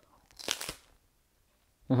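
A brief crunch about half a second in as teeth bite into a milk-chocolate-coated crisp wafer bar.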